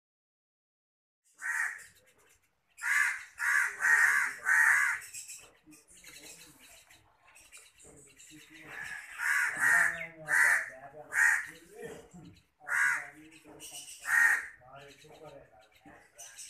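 Young hand-reared long-tailed shrike giving loud, harsh, grating calls in short bursts. A quick run of four comes about three seconds in, then more spaced calls follow.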